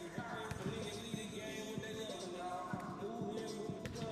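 A basketball bouncing repeatedly on a hardwood court, under background music.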